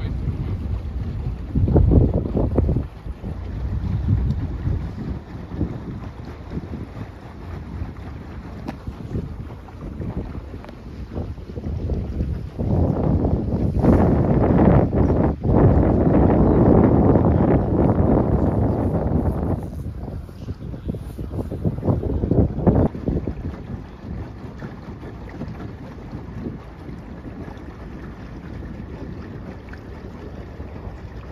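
Wind buffeting the microphone aboard a moving tour boat, over a steady low rumble. The gusts come on hardest about two seconds in, for several seconds through the middle, and briefly again about three-quarters of the way through.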